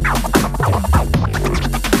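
Vinyl record scratched on a turntable: rapid scratches sliding up and down in pitch over a steady electronic hip-hop beat with bass and drums.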